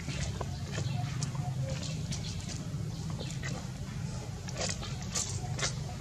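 Baby macaque suckling milk from a feeding bottle: irregular soft clicks and smacks of sucking on the teat, over a steady low rumble.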